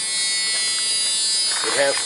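A steady, high-pitched electrical buzzing whine that holds unchanged. A man's voice starts speaking near the end.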